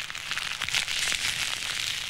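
Sound effect of a fire burning: a steady, dense crackle.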